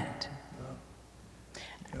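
A short pause in speech: faint room sound with soft, quiet voice traces, as the end of one sentence dies away and the next speaker begins right at the end.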